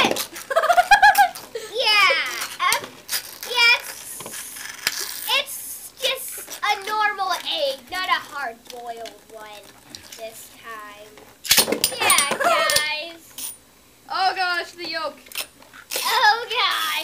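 Excited children's shouts, squeals and laughter, over metal-and-plastic Beyblade spinning tops clattering against a raw egg and the plastic stadium. There is a sharp knock right at the launch and a burst of knocks about twelve seconds in as the egg cracks open.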